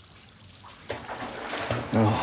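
Footsteps splashing through shallow water on a mine tunnel floor, starting about a second in and getting louder.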